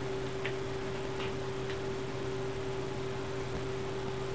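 Steady low electrical hum, with three faint short ticks in the first two seconds.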